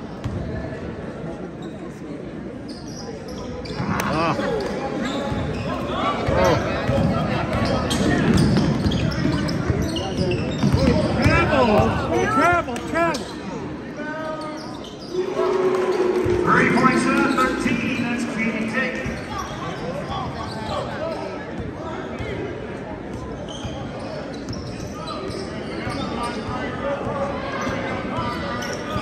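A basketball bouncing on a hardwood gym floor during play, heard in the echo of a large gym. Spectators' voices call out over it, loudest through the middle of the stretch.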